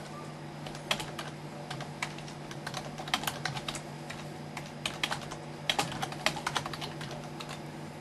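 Typing on a computer keyboard: irregular runs of key clicks, with a short pause about halfway through.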